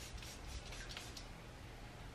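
Faint, short hisses of a perfume atomizer being sprayed a few times in quick succession in the first second or so.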